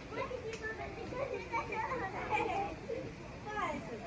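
Indistinct voices of children and other people talking and calling out in the background.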